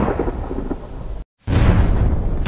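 Thunder-like rumbling sound effect for an animated logo intro. The loud, noisy rumble fades, cuts off suddenly a little past a second in, and after a short gap a second rumble starts.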